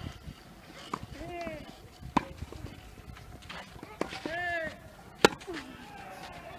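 Tennis balls struck by rackets during a rally on a clay court: sharp pops, the loudest about two seconds in and again about five seconds in, with fainter hits between. Short shouted vocal exclamations come twice, around the strokes.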